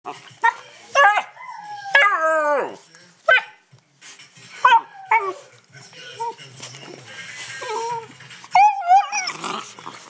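Two-month-old hound puppy bawling: a string of short, high yelps and bays, with a longer call that falls in pitch about two seconds in and a wavering one near the end.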